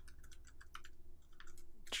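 Typing on a computer keyboard: a quick, uneven run of light keystrokes while a line of code is entered.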